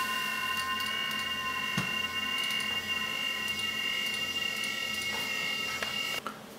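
A steady electronic tone of several high pitches held together like a chord, unchanging, that cuts off suddenly about six seconds in. A couple of faint clicks fall inside it.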